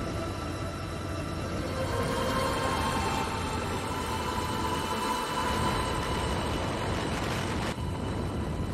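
Steady engine rumble and wind noise from a motorbike riding along a paved road.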